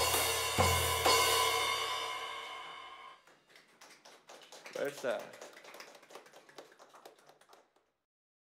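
A live band's closing hits: the drum kit and cymbal crashes strike together with a sustained chord, then the cymbals ring out and fade over about three seconds. Faint clicks and a brief voice follow before the sound cuts off near the end.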